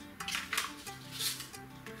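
Lasagna pasta sheets clicking and scraping against a ceramic baking dish as they are laid in: a few short clatters over light background music.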